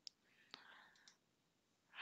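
Near silence, with a few faint computer keyboard key clicks.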